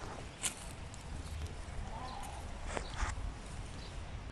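Quiet outdoor sound of plants being picked from grass: a few soft clicks and rustles, spaced irregularly, over a faint low rumble.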